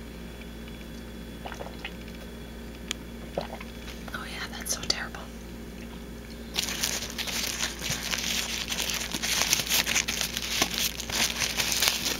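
A fairly quiet stretch with a few small clicks, then about six and a half seconds in a steady crinkling and crackling starts, like a plastic bag being handled, and keeps going.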